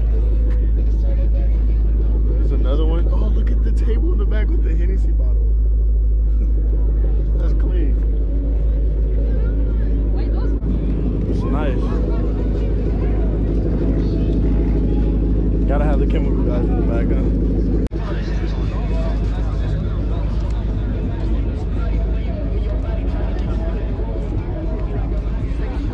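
Car engines idling with a steady low rumble, under the chatter of people talking.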